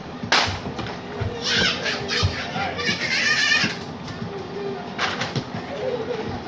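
A sharp slap of a jumping kick striking a hand-held kick pad, then high-pitched children's yelling for a couple of seconds, and another sharp slap about five seconds in.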